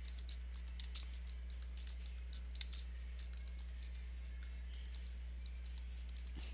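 Computer keyboard keys clicking in a quick, irregular run of keystrokes as a terminal command is typed, over a steady low hum.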